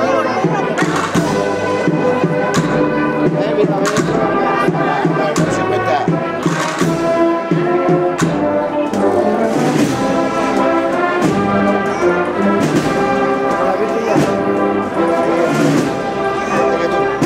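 Brass band playing a processional march, sustained chords with occasional drum strokes.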